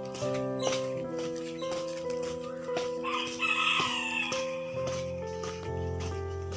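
Background music of soft held notes, with a rooster crowing once, for about a second, about three seconds in.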